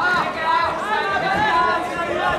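Several voices shouting and calling out at once, overlapping without a break, over general chatter from the stands.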